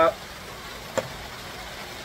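Steady hiss of falling rain, with a single light click about a second in.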